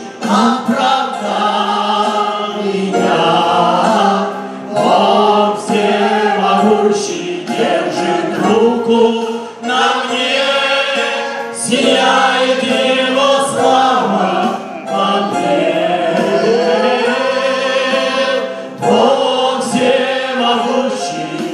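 Christian worship song sung by a small group of men's and women's voices over electronic keyboard accompaniment, in phrases with short breaks between them.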